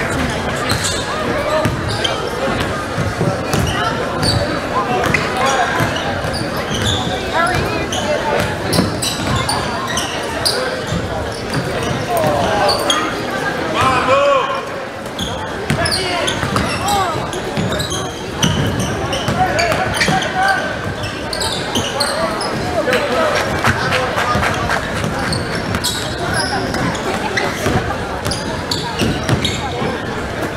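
Live basketball game in an echoing gym: the ball bouncing on the hardwood floor, sneakers squeaking in short chirps, and the indistinct chatter and calls of players and spectators throughout.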